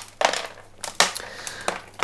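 Gloved hands working old potting mix of pumice and clay granules off an orchid's root ball. The gritty medium rubs and crumbles in two bursts, about a quarter-second and about a second in.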